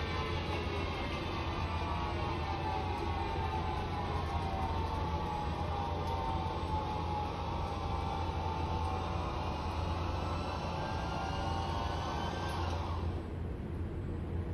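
Robotic patient couch of a proton therapy room moving the patient, its motors giving a whine of several tones that slowly falls in pitch, then rises again and cuts off suddenly near the end as the couch stops, over a steady low room hum.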